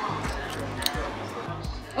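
Background music with a steady beat, with a sharp click a little under a second in as a carbonated rice cola drink is opened.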